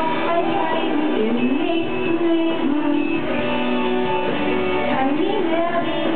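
Live band music: voices singing a held, gliding melody into microphones, over guitar accompaniment.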